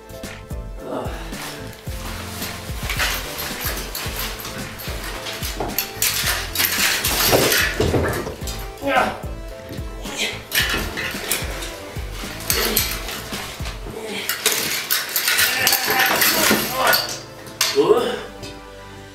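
Metal clothes rail and wire hangers clanking and rattling as the rail is wrestled with and knocked over, a run of metallic clinks and knocks over background music.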